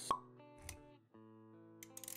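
A short pop sound effect just after the start, over quiet background music of sustained notes. A brief low thud follows about two-thirds of a second in, and the music drops out briefly near the middle before carrying on.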